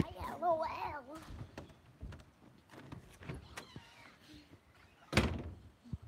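A short high voice near the start, then scattered knocks and a loud thump about five seconds in.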